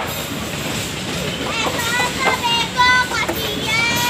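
A passenger train rolling slowly past on the tracks with a steady rumble. High-pitched calls from children's voices sound over it several times, most of them in the second half.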